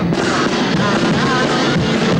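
Live music from a carnival chirigota group: acoustic guitar played with the group's backing, steady and loud with no pause.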